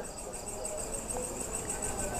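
Steady, high-pitched chirping of crickets in the background, a rapid even pulse that carries on under a pause in the talk.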